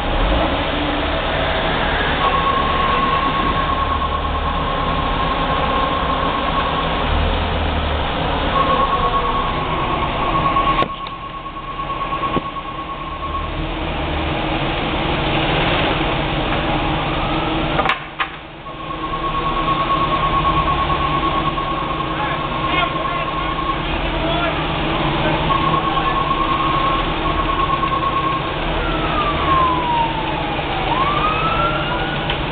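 Fire apparatus engines running steadily. A steady high-pitched tone sounds in stretches of several seconds, four times. Near the end a siren starts wailing up and down.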